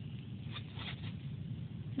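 Quiet room tone with a low rumble and a few faint soft rustles or taps about half a second in, from a fountain pen being handled in the hand close to the microphone.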